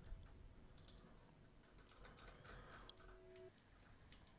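Near silence with faint, scattered computer keyboard and mouse clicks.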